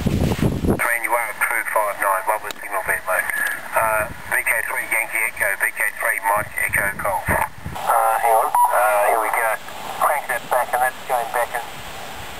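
A distant amateur station's voice on 40 m single sideband (7160 kHz LSB) coming from the loudspeaker of the home-built Knobless Wonder transceiver: thin, narrow-band speech over a faint hiss.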